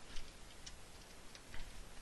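Faint keystrokes on a computer keyboard: a handful of separate clicks, spaced unevenly, as a few characters are typed.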